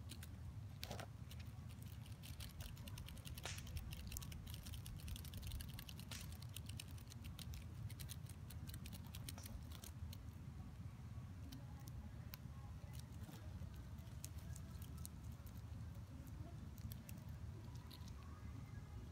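Faint, rapid crackling clicks of a hornet's jaws chewing into a cicada's body, thickest in the first half and thinning out after about ten seconds, over a steady low rumble.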